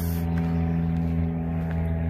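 A steady, even-pitched low mechanical hum, like an engine running at constant speed.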